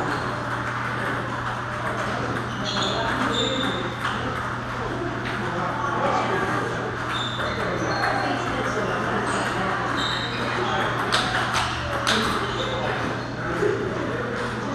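Table tennis balls clicking off tables and paddles in rallies across a large hall, over background chatter from many players and a steady low hum.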